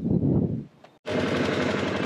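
Utility vehicle's engine idling with a fast, even pulse, cutting in abruptly about a second in after a low rumble and a moment of near silence.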